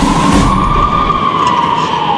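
A siren wailing in one slow rise and fall.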